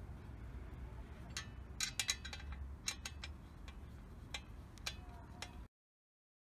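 Scattered light metallic clicks and clinks, a few with a short ring, as an SP Tadao Power Box stainless exhaust pipe is handled and offered up against a Honda CRF250L, over a low steady rumble. Several clicks come close together about two seconds in, and the sound cuts off abruptly near the end.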